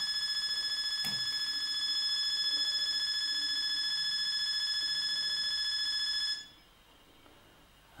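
Smartphone Wi-Fi Finder app giving its steady, high-pitched electronic bleep for a network in range, which cuts off suddenly about six seconds in as the jammer knocks out the Wi-Fi signal.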